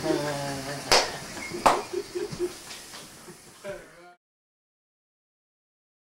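A man laughing in short pulses, with two sharp smacks about one second and a second and a half in. The sound cuts off abruptly to silence about four seconds in.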